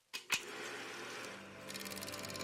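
Two sharp clicks a fraction of a second apart, cutting in from silence, followed by a faint low hum. Near the end a fast, faint high ticking begins.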